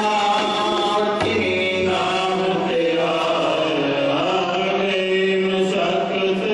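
Male voices singing a Gurbani hymn in kirtan style, in long held, gliding lines over a steady sustained note underneath.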